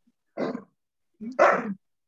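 Two short, harsh vocal sounds about a second apart, the second louder.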